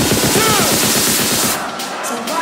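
Electronic dance music build-up in a live DJ set: a fast, even drum roll of about sixteen hits a second that cuts off suddenly about one and a half seconds in, leaving a brief gap before the drop.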